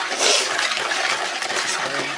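Wooden spoon stirring a runny batter of melted butter, sugar and beaten eggs in a plastic bowl: a steady, wet swishing.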